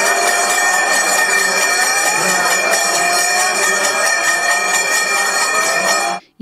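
Steady, loud temple ritual sound during a lamp-waving (deeparadhana) offering. Continuous ringing of temple bells fills the sound, over a low drone and a faint wandering wind-instrument melody.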